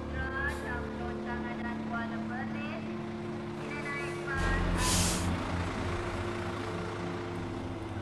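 Large coach engines idling with a steady low rumble, and a loud hiss of air brakes being released about four and a half seconds in, lasting under a second, as the rumble deepens.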